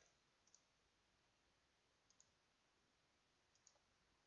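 Near silence with a few faint computer-mouse clicks, each placing a point of a polyline being drawn.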